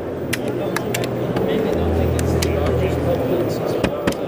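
A series of sharp clicks and knocks from a Sachtler flowtech carbon-fibre tripod's leg hinges and locks as its legs are spread out to set it very low, over steady background chatter and a low hum.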